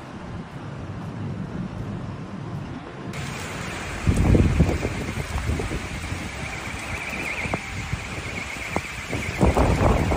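Storm wind and heavy rain, with gusts buffeting the microphone. The sound changes abruptly about three seconds in, bringing a steady high-pitched tone under the rain. Loud gusts hit the microphone about four seconds in and again near the end.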